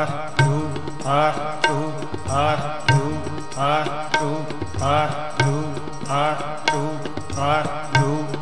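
Sikh kirtan: voices chanting a short devotional phrase over and over, about once every second and a bit, with tabla strokes underneath.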